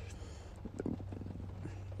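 A pause in a man's speech: a steady low hum with faint background noise and a few faint small clicks, such as breath or mouth noise.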